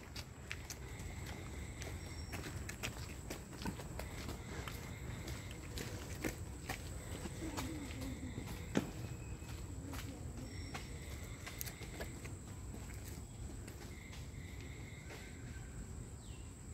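Quiet outdoor ambience: scattered faint ticks and crackles, as of twigs and dry leaf litter being disturbed, over a low steady rumble and a faint, steady, high tone.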